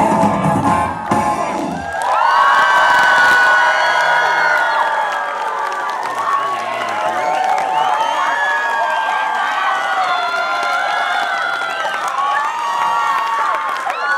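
A live pop band's closing chord ends about two seconds in, and an audience takes over, cheering and whooping with many overlapping shouts.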